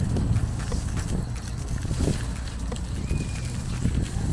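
Footsteps on paving stones, a few irregular knocks, over a steady low rumble of wind on the camera microphone.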